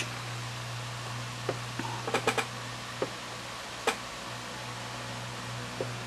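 A few light clicks from working a Graupner MX-20 radio transmitter's switch and setting keys: one about a second and a half in, a quick run of three just after two seconds, single clicks about a second apart after that and a faint one near the end, over a steady low hum.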